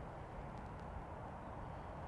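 Faint, steady outdoor background noise with a low rumble and no distinct sound events.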